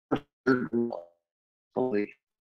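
A man's voice in short bursts: a brief mouth click or plosive just after the start, then a few spoken sounds, with dead silence between.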